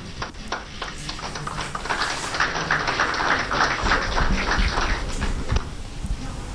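Applause: a few separate claps at first, filling in to dense clapping in the middle and dying away near the end.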